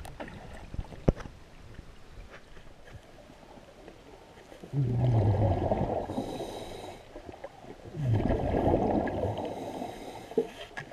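Underwater, a diver breathing through a hookah regulator: two long exhalations of bubbles, about five and eight seconds in, each starting with a low falling gurgle. A sharp click sounds about a second in.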